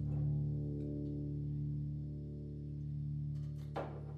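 Hollow-body electric guitar chord ringing through an amplifier and slowly fading, over a steady low hum.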